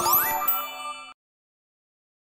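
End of a short outro music jingle: rising sliding chime tones and a bright ding that rings briefly, then the track cuts off about a second in.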